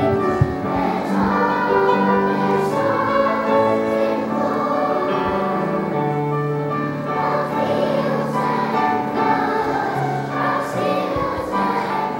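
A choir of young children singing together in held notes, with steady low accompanying notes underneath.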